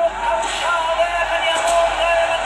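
Soundtrack of a 1970s boxing anime's fight scene: a steady noisy din with a long, held, slightly wavering pitched sound over it, during the ring announcer's call of a right counter-punch.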